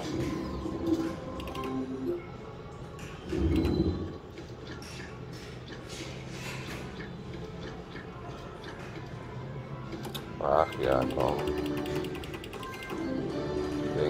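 Book of Ra Classic slot machine playing its free-game feature music and jingles after the three-book trigger, with a fast, even ticking as the special symbol for the 15 free spins is picked.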